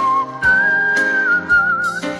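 Instrumental intro of a children's song: a single high whistled melody holds long notes and steps up, wavering near the end, over sustained backing chords and a steady beat.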